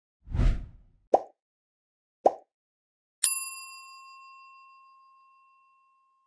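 Subscribe-button animation sound effects: a short swoosh, two quick plops about a second apart, then a single bright notification-bell ding that rings out and fades over about two and a half seconds.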